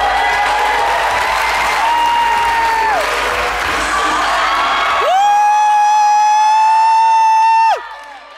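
Audience cheering and whooping over dance music. About five seconds in, a loud, long, high held note takes over and cuts off abruptly just before the end.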